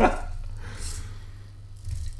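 Small hobby servos of a 3D-printed robot arm moving faintly under the knife's weight, with a short click near the end.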